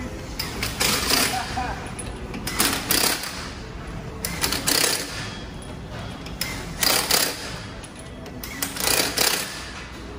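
Impact wrench hammering lug nuts onto a newly mounted wheel, in about five short bursts roughly two seconds apart.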